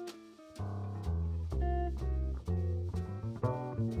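Live small-group jazz: electric guitar playing lines over plucked double bass, with the band coming back in after a brief lull at the start.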